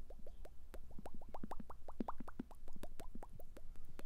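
Cartoon bubble sound effect: a rapid run of short bloops, each rising in pitch, about seven or eight a second and uneven in loudness.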